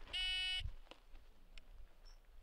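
Shot timer's start beep: a single steady electronic tone lasting about half a second, the signal to begin the drill. It is followed by a few faint knocks of rifle and gear handling.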